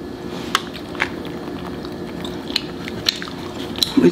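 Light scattered clicks and crackles of food being handled close to the microphone on a foil-lined tray, as green onions are scattered onto a sauce-covered burrito, over a faint steady hum.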